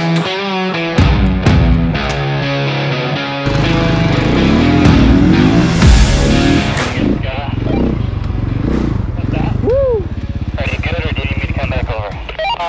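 Electric-guitar rock music, then, about three and a half seconds in, a snow bike's engine revving up and down and running.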